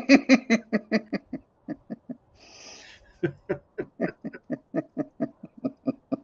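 A man laughing at length in a quick run of short voiced bursts, drawing one hissing breath in about halfway through, then laughing on.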